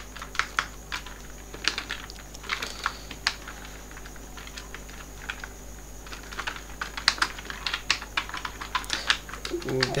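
Computer keyboard typing: irregular, rapid key clicks as code is entered, over a low steady hum.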